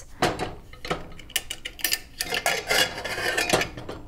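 Metal cookware and utensil clatter: a run of clinks, knocks and scrapes from a pot and a spoon as a pot of cooked white kidney beans is checked, busiest a little past the middle.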